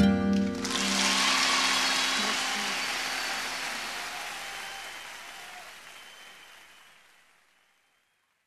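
The song's last guitar chord rings out as an audience breaks into applause. The applause fades steadily away over about seven seconds.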